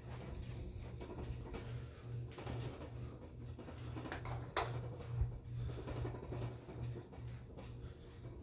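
Rustling and handling noise from a phone being moved about by hand, over a low steady hum, with a sharp click about halfway through and a dull knock just after.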